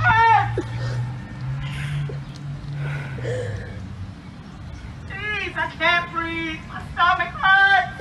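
A voice calling out in short, strained cries in English, once at the start and again from about five seconds in. It is reciting George Floyd's last words, such as "Everything hurts!".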